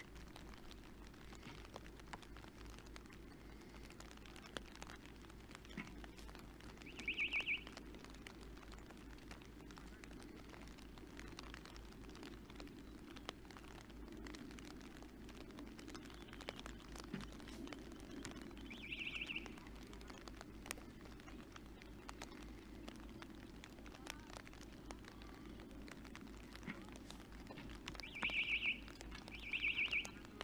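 Quiet outdoor ambience in rain: a steady low rumble with faint scattered taps, broken by short high chirps about 7 s and 19 s in and twice near the end.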